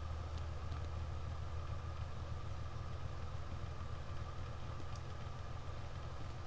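Bedini pulse motor's magnet rotor spinning with a steady hum and whir, picking up speed with its pickup coil shorted.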